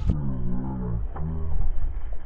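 A man's low, drawn-out 'ohhh' exclamations, two held calls, the second starting about a second in, as a hooked fish jumps. The recording is muffled.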